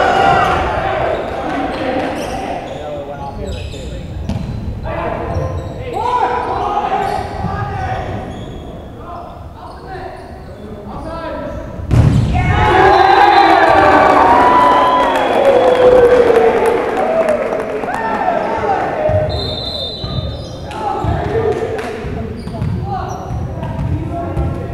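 Volleyball rally in a gymnasium: a ball being struck and bouncing on the hardwood court, with players shouting and the sound echoing in the hall. About halfway through there is a sharp smack, followed by several seconds of loud shouting.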